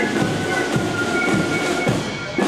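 Marching band of flutes and drums (a Spielmannszug) playing a march: a melody of held high flute notes over a steady drum beat.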